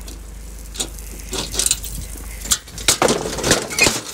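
Bricks being loaded by hand into a tipper van's bed, knocking and clinking against other bricks in irregular clatters that grow busier after the first second.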